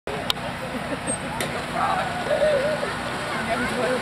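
Outdoor ambience of indistinct voices over a steady traffic-like noise, with two sharp clicks in the first second and a half.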